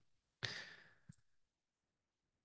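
A short breath, fading out within about half a second, taken about half a second in; a faint click just after a second, otherwise near silence.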